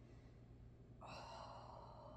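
A woman breathing out in a soft sigh, starting about a second in and lasting about a second, over near silence.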